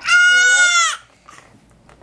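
A young child's loud, high-pitched squeal, held for about a second and dipping in pitch as it ends.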